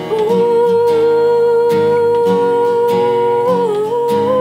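A woman's voice holding one long sung note with no words over a steadily strummed acoustic guitar, the note dipping briefly in pitch near the end.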